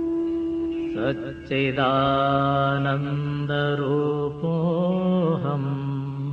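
Sanskrit mantra chant by a single voice, sung in long wavering held notes that slide up and down, over a steady sustained drone. The voice comes in about a second in after a stretch of drone alone.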